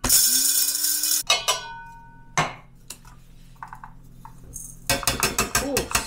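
Electric blade spice grinder grinding black peppercorns in one burst of about a second, its motor pitch rising as it spins up. Then metal clicks with a short ring and a knock, and near the end a run of clinks and rattles as the ground pepper is tipped from the grinder's metal cup into a steel mixing bowl.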